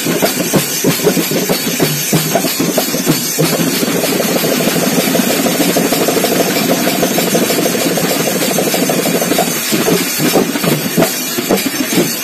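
A group of small handheld frame drums (tappeta) beaten fast together, with metal hand cymbals. Near the middle the strokes run together into a fast continuous roll for about six seconds, then break back into separate beats.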